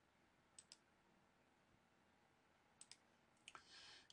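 Near silence with a few faint clicks of a computer mouse, in two quick pairs about half a second in and near the three-second mark, then one more just before the end.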